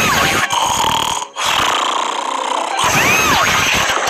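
A plastic soda bottle bursting under a car tyre, its fizzy contents spraying out in a loud hiss that breaks off briefly about a second in. Two short rising-then-falling squeals sound over it, near the start and about three seconds in.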